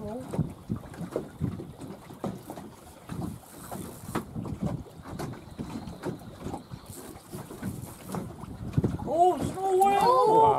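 Wind on the microphone and water against a small boat's hull, with irregular knocks and gusts. A person's voice exclaims near the end.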